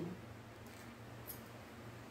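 Quiet room with a steady low hum and one brief, faint high click a little over a second in, from light handling of fabric scissors and a zipper on a cutting mat.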